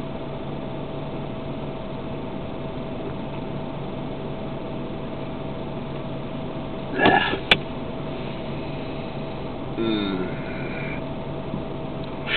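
Car heater blower blowing steadily through a dash vent close by, a constant hum and hiss. A short noise ending in a sharp click comes about seven seconds in, and a brief softer sound about ten seconds in.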